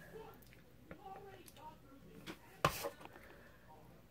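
A quiet room with faint murmured voices and a single sharp knock a little before three seconds in.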